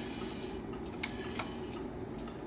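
Two light clicks about a second in, less than half a second apart, from the front-panel selector knobs of an Akai GX-280D SS reel-to-reel tape deck being turned, over a steady faint hiss.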